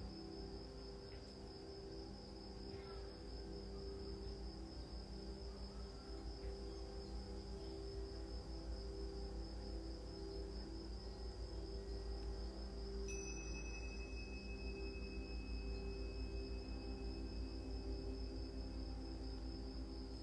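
Quiet, steady background music of sustained low drone tones, with a continuous high-pitched cricket trill over it.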